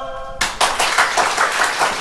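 The tail of a choir's final held chord fades out, and about half a second in an audience breaks into applause, many hands clapping at once.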